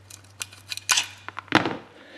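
Flat-blade screwdriver prying and scraping a gasket off the flange of a GY6 50cc scooter's valve cover: a few short metallic scrapes and clicks, the loudest about a second and a half in.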